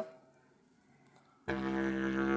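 A long PVC pipe blown like a didgeridoo with loose, buzzing lips. After about a second and a half of quiet, a low drone starts suddenly and holds steady.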